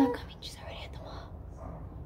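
Only voices: a girl's loud, drawn-out vocal note cuts off just after the start, followed by faint whispering and murmured talk.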